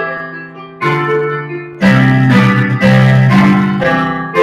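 Piano playing a slow hymn tune, chords and single notes struck and left to ring, with a loud deep bass chord about two seconds in.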